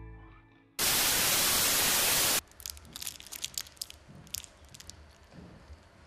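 Background music fades out, then a loud burst of white-noise static lasts about a second and a half, used as a transition effect. After it, faint crinkling crackles, typical of a sweet's wrapper being handled.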